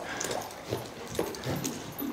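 Faint sounds of a horse cantering on a soft arena surface: muffled footfalls and breaths coming about every half second, in time with its stride.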